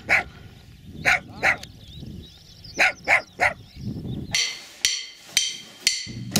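Small dog barking in short, sharp yaps, about ten of them in uneven runs of two and three.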